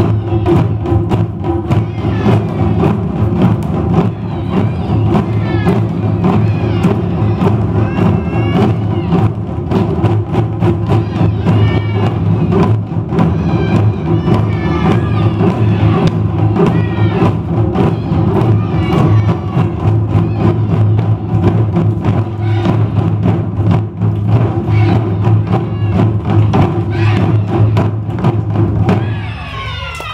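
Taiko ensemble drumming: okedo, nagado and shime drums struck together in a fast, dense rhythm, with the big drums ringing deep. The piece ends about a second before the close, the sound dying away.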